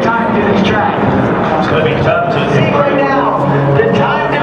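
Indistinct, continuous talking with no clear words, several voices or sounds overlapping.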